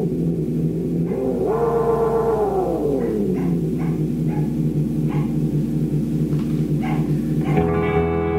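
Repeating echoes from a DOD FX-90 analog delay pedal, a bucket-brigade delay, while its knobs are being turned. About a second and a half in, the echoes slide down in pitch as the delay time changes, then settle into a fast repeating pattern. Near the end a low steady hum with a buzzy tone comes in.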